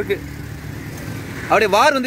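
Steady low background rumble, with a voice speaking from about a second and a half in.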